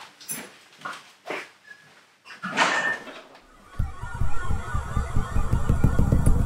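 A few short, breathy sounds, like quick nervous breaths. About four seconds in, a low, throbbing rumble swells up and holds: a sci-fi alien-craft drone.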